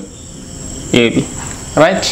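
A steady high-pitched chirring in the background, broken by two brief voice sounds, about a second in and near the end.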